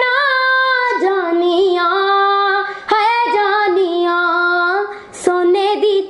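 A young girl singing solo and unaccompanied, holding long notes with small wavering ornaments. She breaks for short breaths about a second in, near three seconds, and just after five seconds.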